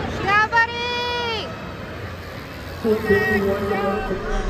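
A spectator's high-pitched shout that rises and is held for about a second, then another voice calling out near the end, over background crowd chatter at a BMX race.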